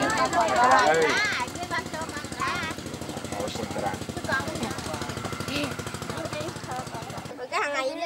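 A crowd of children chattering and calling out, over a rapid, steady mechanical pulsing like a small engine running. The pulsing cuts off suddenly near the end.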